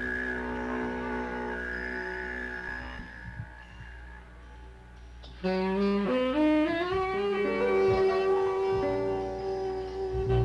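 Live jazz band playing quiet held notes, then a saxophone comes in loud about five and a half seconds in, sliding upward in pitch and settling on a long held note.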